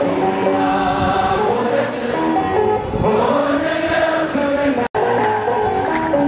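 A choir sings an Ethiopian Orthodox hymn (mezmur) in long held notes. The sound cuts out for an instant about five seconds in.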